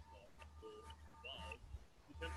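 Very faint, garbled lecture voice from a YouTube video relayed through a video call, too low to follow, over a low hum.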